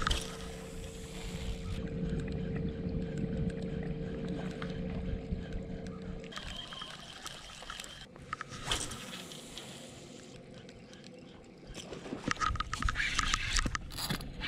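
Electric trolling motor humming steadily, cutting off about six seconds in. After that there is quieter water and handling noise, then a louder, irregular stretch near the end as a fish is hooked.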